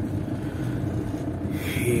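Engines of a slow queue of motorhomes and cars: a steady low rumble. A man's voice starts near the end.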